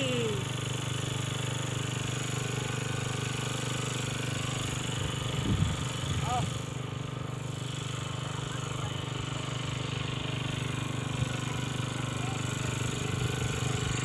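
A steady low engine hum, with faint voices briefly near the middle.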